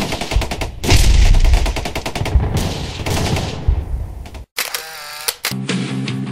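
Machine-gun fire sound effect: a rapid, loud burst of shots with heavy booms, cutting off abruptly about four and a half seconds in. A short pitched sound follows before music resumes near the end.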